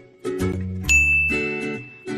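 A bright ding sound effect about a second in, ringing on as a single held high tone, over light background music. It marks the reveal of the correct answer.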